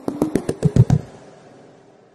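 Outro jingle of pitched wood-block-like knocks, about six or seven a second, with deeper hits on the last few. It ends about a second in, then the sound rings out and fades away.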